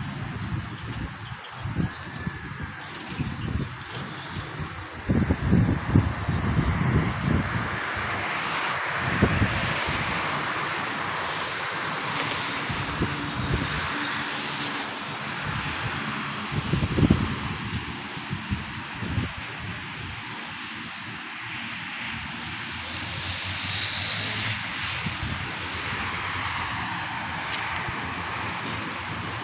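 An airplane flying over: a broad, even roar that swells about eight seconds in and holds, with a few low thumps on the microphone.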